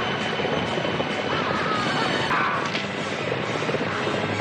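Dense, continuous rumble of many galloping horses' hooves and rolling wagon wheels from a large wagon race.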